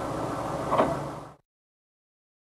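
Steady low rumble and road noise inside a car, with one short louder sound about a second in. It cuts off suddenly to silence.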